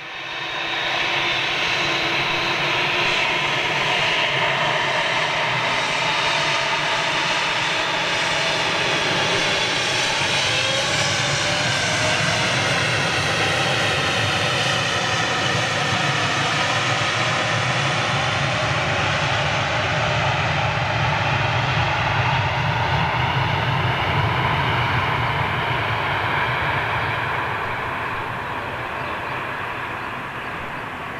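Boeing 787 Dreamliner's twin turbofan engines at takeoff thrust during the takeoff roll: a loud, steady jet sound with whining fan tones that shift in pitch as the aircraft passes, easing off slightly near the end.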